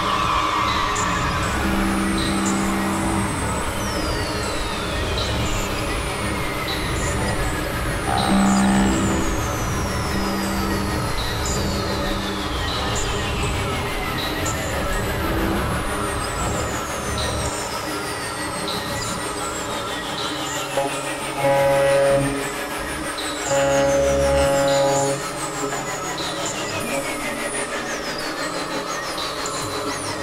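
Experimental synthesizer drone music: repeated falling pitch sweeps over sustained tones and a low noisy rumble. Short held chords sound about a quarter of the way in and twice more later on, and the rumble thins out a little past halfway.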